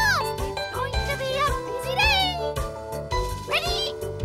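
Cartoon theme song: upbeat children's music with high voices singing over it in quick rising and falling phrases.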